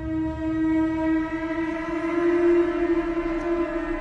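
Dramatic background score: one long held synth note, steady and swelling slightly about halfway through, carrying on from a percussion hit just before.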